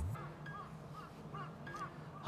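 A string of faint, short bird calls repeating a few times a second over low outdoor background noise.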